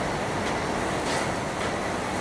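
Steady, even background noise of a room's ambience, with no distinct events.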